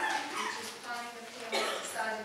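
A person speaking in a meeting room.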